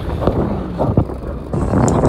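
Wind buffeting the microphone over sea and boat noise on the deck of a fishing boat, with a couple of short knocks about a second in; the wind noise grows louder in the second half.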